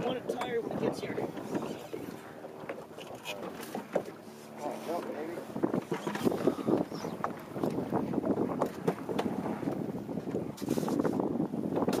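Indistinct voices of people aboard a small open fishing boat, with wind buffeting the microphone. A steady low hum runs for a couple of seconds a few seconds in.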